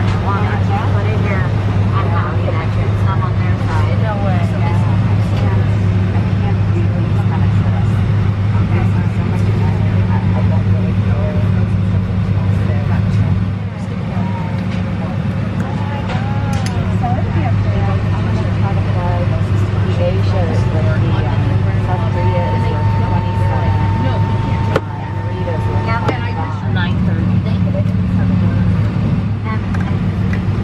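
Inside an Airbus A319 cabin at the gate: a steady low hum from the aircraft's systems, with passengers' chatter over it. A thin steady tone sounds for a few seconds about three-quarters of the way in.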